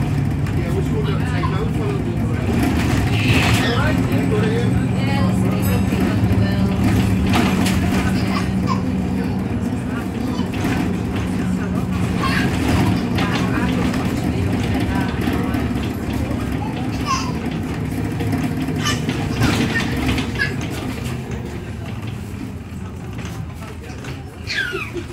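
Bus engine and drivetrain running while under way, heard from inside the passenger saloon: a steady low engine note that shifts in pitch, with people's voices over it. It grows quieter over the last several seconds as the bus slows.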